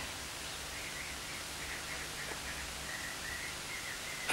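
Steady hiss of background noise from an old analogue videotape transfer, with a faint high tone coming and going.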